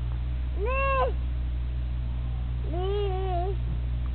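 Two short pitched animal calls that rise and fall in pitch, the second a little longer and wavering, over a steady low hum.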